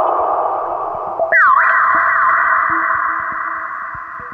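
Synthesizer playing Ableton Live's Neptune Arp preset, its filter cutoff and resonance moved by a tilting motion sensor: a resonant filter sweep wobbles up and down a little over a second in and the sound shifts higher, then it slowly fades.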